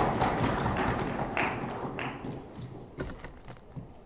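Audience applause dying away over the first two seconds or so, leaving the separate taps of footsteps on a stage.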